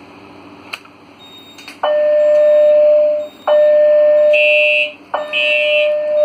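Fire alarm system on a Simplex 4010 panel going into alarm after a manual pull station is pulled: a click about a second in, then three long steady alarm tones of about a second and a half each, with shorter higher-pitched beeps joining over the last two.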